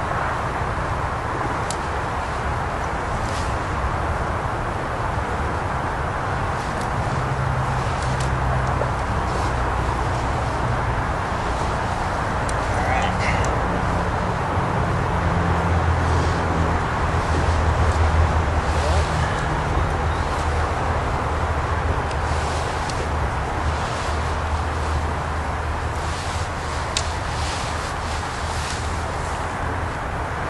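Steady outdoor background hiss with a low rumble under it that swells around the middle, and a few faint light clicks.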